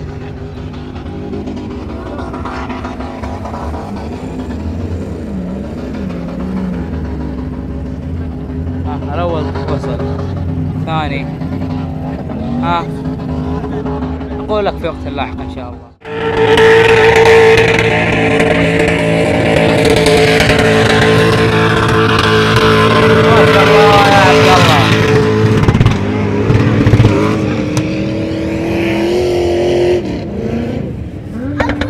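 Background music with a wavering singing voice, then, after a sudden break about halfway through, off-road 4x4 SUV engines revving hard and loud as they climb a sand dune, the engine pitch rising near the end.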